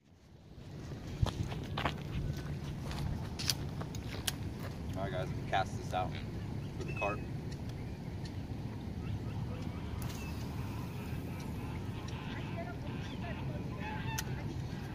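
Outdoor lakeside ambience: a steady low rumble, with a few light clicks in the first few seconds and brief distant voices about five to seven seconds in.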